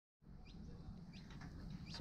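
A bird chirping faintly, three short rising calls about two-thirds of a second apart, over a low steady rumble of outdoor background noise.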